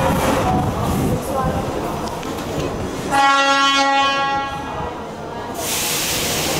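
A metro train's horn sounds one steady, pitched blast about three seconds in, lasting about a second and then fading. It comes after a few seconds of crowd and footstep noise in the station.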